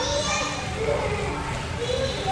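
Children's voices calling out and chattering while playing, over a steady low background rumble.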